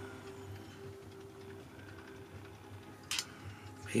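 Quiet room tone with a faint steady hum, one tone in it fading out after a second and a half, and a short hiss about three seconds in.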